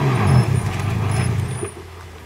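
Four-wheel drive's engine running as it drives up a dirt track, its pitch falling about half a second in, then growing quieter near the end.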